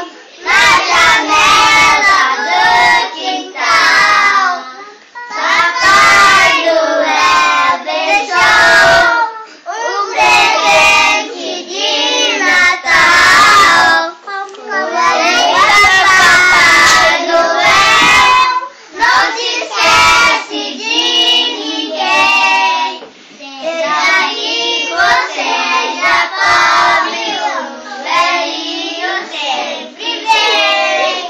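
A group of children singing a Portuguese-language Christmas song together, in phrases separated by short breaths.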